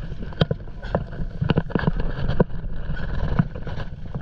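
Stand-up paddleboard paddles stroking through choppy water, with irregular splashes and slaps of water against the boards and some wind buffeting the microphone.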